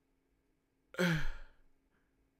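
A man's short, breathy sigh about a second in, falling in pitch as he comes down from laughing.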